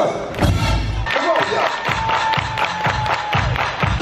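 Dance music over a sound system with a steady thumping beat and heavy bass, and a single note held through the middle.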